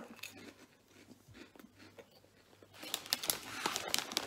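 Quiet chewing of puffed corn snacks, then, about three seconds in, the crinkling of a plastic snack bag as it is handled.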